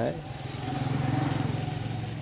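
A motorbike engine passing nearby: a steady, rapidly pulsing engine note that swells toward the middle and eases off near the end.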